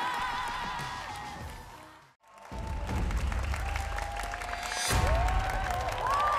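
An audience claps as the last held note of a song fades out, dropping to near silence about two seconds in. Then the next piece of music begins with a low, dense instrumental bed and a thin held note, swelling near the end.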